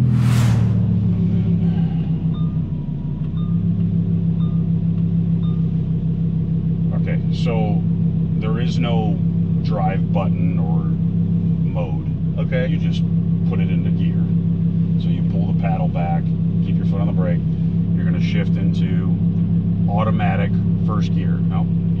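Lamborghini Huracan LP580-2's 5.2-litre V10 just after a start: the end of the start-up rev flare, then the idle settling lower about three seconds in and running steadily, heard from inside the cabin.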